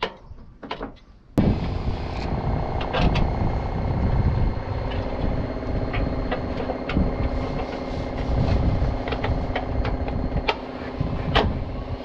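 Sharp plastic clicks and knocks as a truck cab's front corner panel is pressed into place. About a second and a half in, a steady engine hum cuts in suddenly and runs on under scattered taps and knocks.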